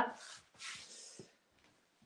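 Hands smoothing and rubbing over a shirt's fabric laid flat: two soft swishes in the first second, then a faint tick.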